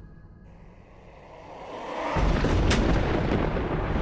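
Dramatic edited-in sound effect: a swell that breaks into a loud, deep rumbling boom about two seconds in, with a sharp crack just after, under background music.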